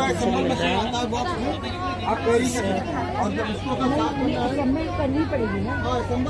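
Indistinct talk of several people nearby, voices overlapping in crowd chatter.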